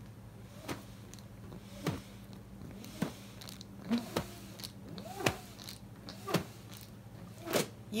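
Button whirligig on a looped string, spun back and forth by pulling and relaxing the string: it hums in pulses about once a second, each hum rising and falling in pitch as the button speeds up and reverses.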